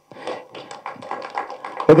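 Scattered hand clapping from the people present, fairly quiet. The speaker's voice comes back just at the end.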